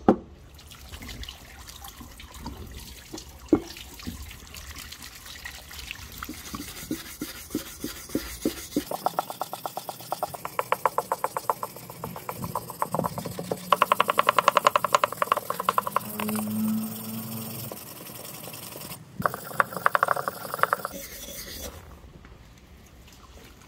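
A stiff hand brush scrubbing a wet steel axe head on a wooden table, in runs of rapid back-and-forth strokes, cleaning off rust and grime. Near the start the heavy steel head knocks sharply on the wood as it is set down.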